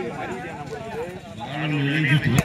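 Many overlapping voices of players and spectators talking and calling out, with one man's voice coming up louder near the end.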